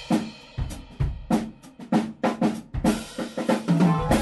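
Jazz band's drum kit playing a break: snare, bass drum and cymbals struck in a quick, uneven run of hits.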